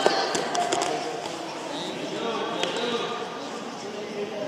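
Indistinct voices of spectators and coaches in a gymnasium, with a few sharp thuds from the wrestlers working on the mat, the sharpest one right at the start.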